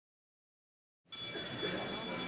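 Silence for about a second, then an electric bell starts ringing: a steady, high, continuous ring.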